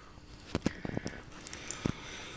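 Eurasian red squirrels gnawing and cracking nuts, giving a handful of separate sharp clicks and cracks, with a louder, duller knock near the end.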